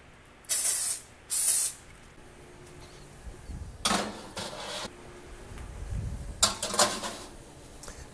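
Two short hissing sprays of cooking oil, misted over floured chicken drumsticks held about a foot away to help them crisp. Later, a few quieter clattering noises as the metal mesh crisper trays go onto the oven racks.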